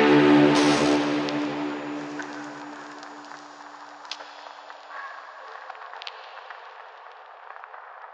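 A held electronic synth chord fading out over the first few seconds as the track closes. It leaves a faint hiss with scattered small clicks.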